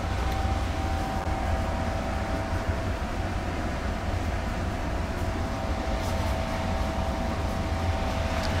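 Steady machine drone: a low rumble with a steady mid-pitched hum over it, unchanging throughout.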